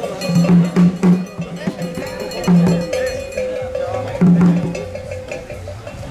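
Ghanaian traditional drum ensemble: deep strokes on the large drums in short, irregular clusters, with sharp higher hits and a metal bell ringing.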